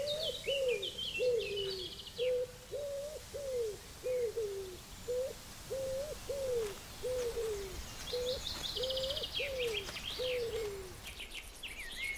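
Birds calling in a meadow: one bird repeats low cooing notes, each rising then falling, about one and a half a second, over higher chirping from smaller birds, with a brief fast trill a little past the middle.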